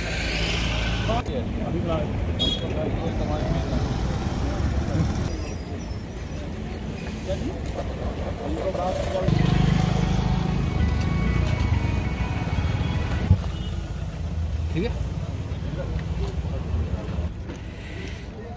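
Car engines running, with people talking in the background; the low engine rumble swells for a few seconds about halfway through.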